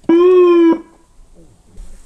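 Police patrol car's special sound-signal unit (siren loudspeaker) giving a single short burst of one of its signal tones: one steady pitch lasting under a second, cut off sharply.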